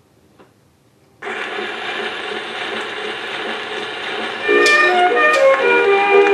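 Edison Diamond Disc phonograph: a faint click, then about a second in the reproducer's stylus sets down on the spinning disc and the lead-in groove gives a steady surface hiss. About four and a half seconds in, the 1921 acoustic band recording starts, louder, over the hiss.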